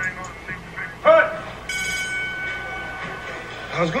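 A short vocal exclamation about a second in, then a steady electronic tone made of several high pitches held for about two seconds, like a phone-type ring or beep, heard from the music video's soundtrack.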